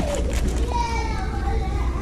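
A child's voice, indistinct and drawn out, over a steady low hum.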